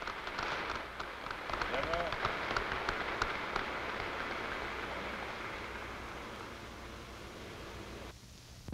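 Large audience applauding, a dense patter of clapping that slowly dies away. A man's voice briefly says "General" about two seconds in.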